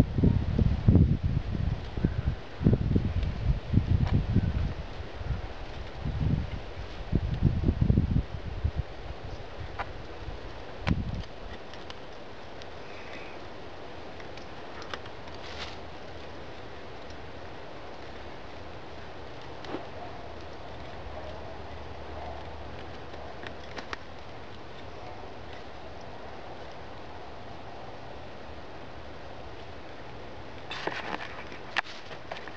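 Wind buffeting the microphone in loud, uneven low gusts for about the first eleven seconds, then dying down to a quiet steady background. A few light clicks and rustles come from cord being wrapped tightly around a row of lashed sticks.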